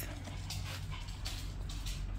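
Shiba Inu dogs playing, making a few soft, short rushes of noise with no clear bark or whine.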